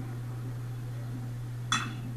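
One sharp ping of a metal baseball bat meeting the ball, near the end, struck hard enough for a home run. A steady low hum runs underneath.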